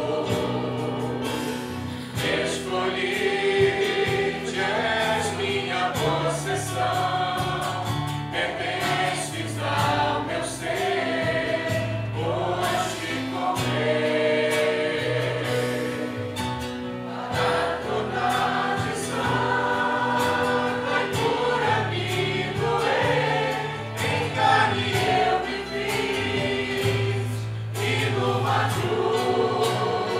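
Gospel worship song: music with choir-like voices over a steady bass line.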